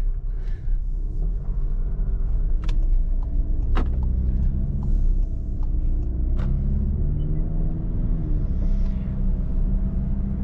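Inside the cabin of a 2019 VW Golf 7.5 with a 1.6 TDI diesel and seven-speed DSG, pulling away and driving: a steady low engine and road rumble. The engine note rises and falls, with a couple of sharp clicks a few seconds in.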